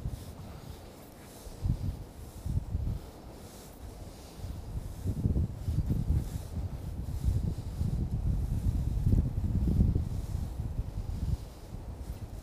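Wind gusting across the microphone, a low rumbling buffet that comes and goes and grows stronger from about four seconds in.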